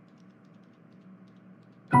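Near silence: a faint steady low hum between lines of dialogue. Right at the end, background music and a computer-synthesized male voice start together.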